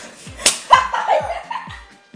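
A sharp hand slap about half a second in, over background music with a steady thumping beat.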